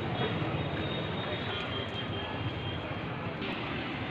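A motor vehicle's engine running steadily, a low rumble under general outdoor noise.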